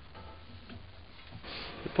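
Faint small ticks and handling noise as the lathe's motor is held pulled forward and the drive belt is shifted between pulleys by hand, over a low steady hum.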